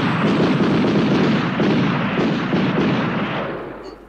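Anime sound effect of a rapid barrage of energy-blast impacts pounding into a wall: a dense, continuous volley of hits that fades out near the end.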